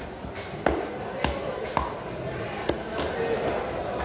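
A heavy long-bladed knife chopping through a large grouper onto a thick chopping block: four sharp chops, each with a dull thud, at uneven intervals through the first three seconds.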